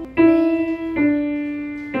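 Piano played one note at a time: three single notes, each a step lower than the last, about a second apart, each ringing and fading before the next.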